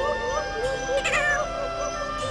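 A cartoon monkey's high, wavering squeal about a second in, over background music with held chords.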